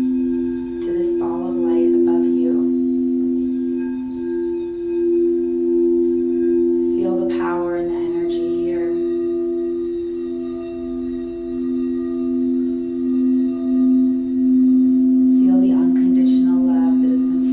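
Frosted quartz crystal singing bowl being played with a mallet, giving a sustained hum of two steady low tones with a slow pulsing waver.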